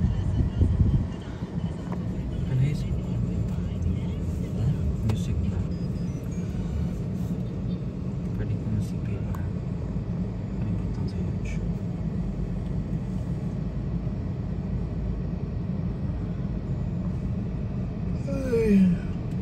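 Steady low rumble of a car driving, with road and engine noise and a few faint clicks.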